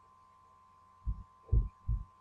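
Three short, low thumps in quick succession, starting about a second in, over near silence.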